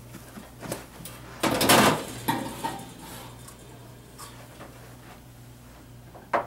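Sheet-metal furnace blower housing being handled: a short, loud metallic rattle and scrape about a second and a half in, with a few lighter clicks and knocks before and after.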